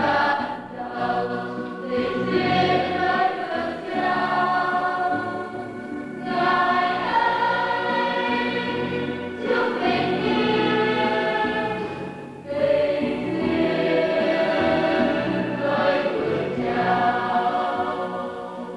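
Church choir singing a hymn in long held phrases, with short breaks between phrases every few seconds.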